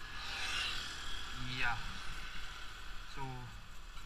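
Motorcycle riding slowly, with a steady low rumble. A hiss of wind on the microphone fades after about a second and a half.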